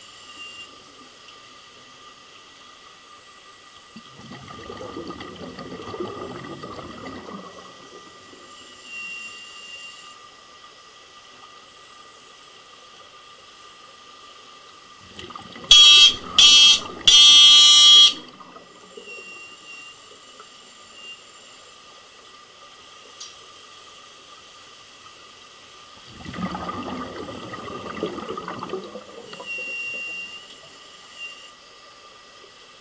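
Underwater sound through a camera housing: scuba divers' exhaled breath rises as low rumbling bubbles twice, about four seconds in and again near the end. Midway a loud buzzing tone sounds in three short bursts. A faint steady hum runs underneath.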